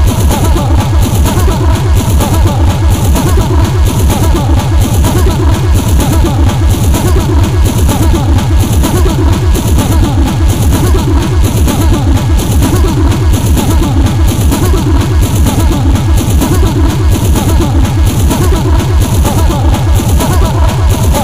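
Speedcore/flashcore electronic music: a very fast, loud kick drum pounding without a break under a dense, noisy upper layer.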